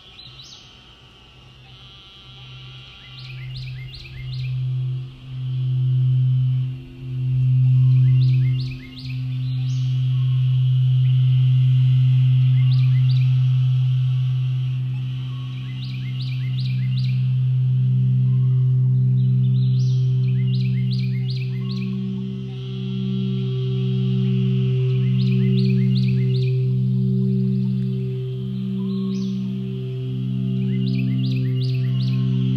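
Crystal singing bowls played with a mallet. A deep bowl tone swells in pulses at first, then rings steadily from about a third of the way in, and higher bowls join with wavering, beating tones. Over them come short high chirping calls of frogs and birds in clusters every few seconds.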